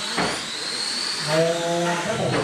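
21.5-turn brushless electric motors of RC late model cars whining as they lap, the pitch rising and falling with throttle over a hiss of tyres on the dirt. A voice calls out, holding a word, in the second half.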